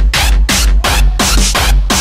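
Hardtekk DJ set: fast electronic dance music driven by a kick drum that drops in pitch on each hit, about three beats a second, under a bright, choppy upper layer that cuts in and out with the beat.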